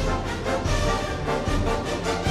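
Orchestral music with a section of kazoos buzzing the tune together.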